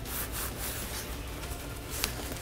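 Steady, low rubbing and rustling of a Warrior Ritual G3 goalie trapper's padding and finger strap as a hand inside the glove is adjusted and the strap pressed down.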